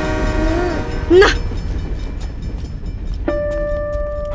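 Steady low rumble, with a short, loud rising pitched sound about a second in. Near the end a held musical note comes in: the film's score starting.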